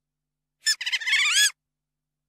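Sea otter squealing: two high-pitched squeaky calls, a short one followed by a longer one that rises and falls in pitch.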